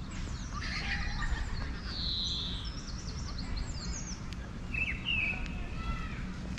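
Songbirds singing and chirping, with a short trill about two seconds in and a run of quick high notes after it, over a steady low rumble of background noise.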